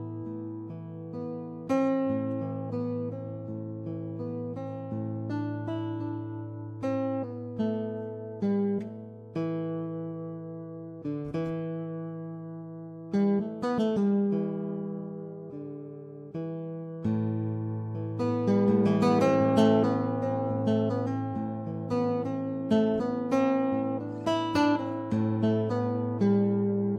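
Pianoteq's physically modelled classical guitar played in 31-tone equal temperament: plucked notes and chords that ring and decay over held bass notes. The playing grows busier in the second half.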